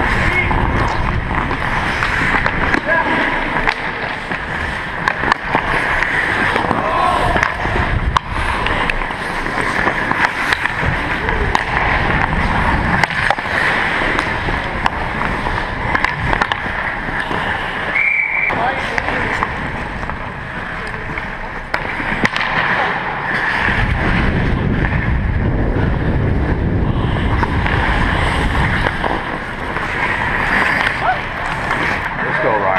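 Ice hockey heard from a skating player's camera: skate blades scraping and carving the ice, with sharp clicks of sticks and puck throughout. Wind rumbles over the microphone at the start and again near the end.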